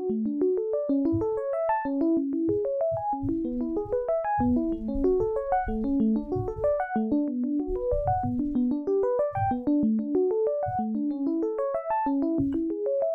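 Arturia DX7 V software synthesizer on its E.Piano 1 preset, its arpeggiator breaking the chords into quick rising note runs that repeat about once a second, with low notes sounding underneath.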